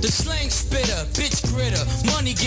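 Hip-hop track: rapping over a beat with a deep, steady bass line and drums.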